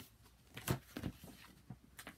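A few short, soft rustles and taps as the paper dust jacket of a hardcover comic omnibus is handled and slid off. The loudest comes just under a second in.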